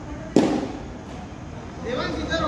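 A single sharp crack of a cricket ball impact about a third of a second in, fading quickly.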